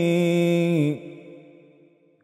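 A man's unaccompanied devotional chanting (madahi), holding one long sung note that steps slightly down in pitch and then trails off about a second in.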